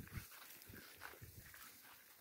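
Near silence with a few faint, soft, short knocks.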